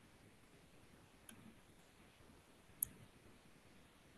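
Near silence with two small clicks about a second and a half apart; the second is sharper and louder.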